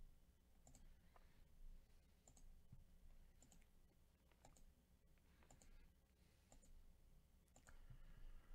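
Faint computer mouse clicks, about one a second, as an on-screen button is clicked again and again.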